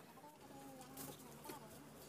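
Near silence, with faint short animal calls in the background early on and a couple of soft ticks about a second and a second and a half in.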